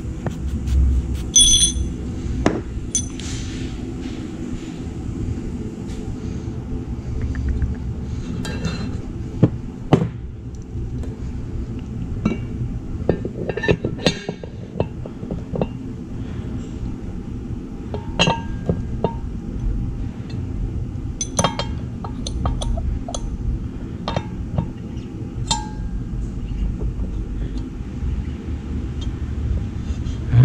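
Small metal parts clinking and tapping as steel bearing races are lubed and handled against an engine case half, a few sharp clinks ringing briefly, over a steady low hum.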